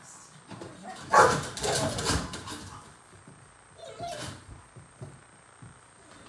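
Dog barking from a crate: a loud volley starting about a second in and lasting about a second and a half, then a shorter, fainter bark or two a little after four seconds.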